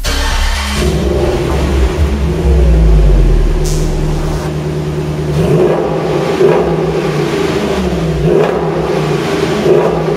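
Jeep Grand Cherokee SRT8's Hemi V8 running and being revved, heard from behind at the exhaust, its pitch rising and falling several times with a heavy rumble in the first few seconds.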